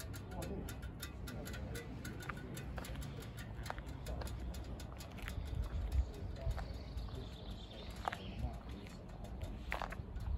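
Footsteps on gritty concrete with scattered small clicks and knocks, over a low uneven rumble of wind and handling on the microphone.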